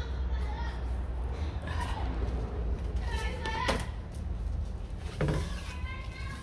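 Children's voices in the background, with a steady low rumble underneath and a single knock a little past halfway.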